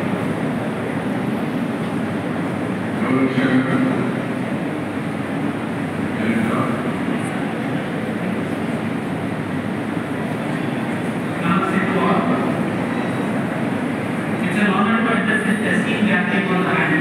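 Indistinct speech over a microphone and loudspeakers, in a few short phrases, over a steady rumbling din of a large hall.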